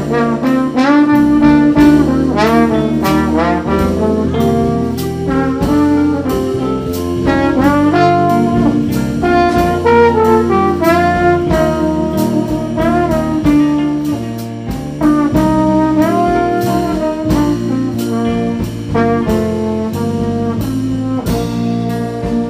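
Jazz band playing live: trombone and saxophone carry a melody with sliding, bending notes over electric bass and a steady drum beat.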